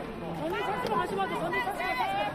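Several voices talking over one another, with crowd chatter in a large reverberant arena behind them.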